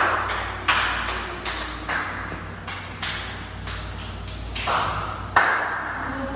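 Footsteps of several people on a tiled floor echoing in a long enclosed tunnel: sharp steps about every half second to a second, each with a short ringing echo.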